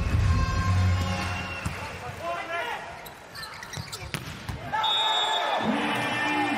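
Indoor volleyball rally: several sharp ball hits over arena noise and shouting voices.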